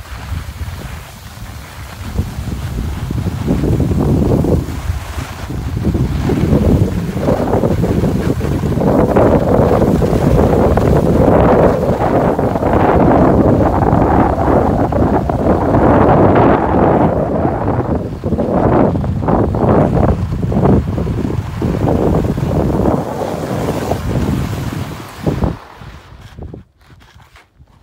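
Wind rushing over a phone's microphone while skiing downhill, mixed with the sound of skis sliding on snow. It grows louder over the first few seconds and falls away sharply just before the end, as the skier slows to a stop.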